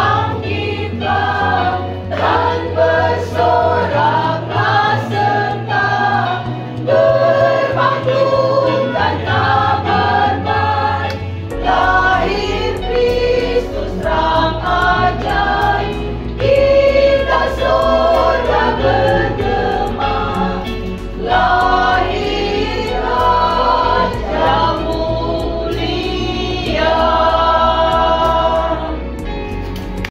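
A small group of women singing a hymn in unison, accompanied by an electronic keyboard whose held bass notes change every few seconds.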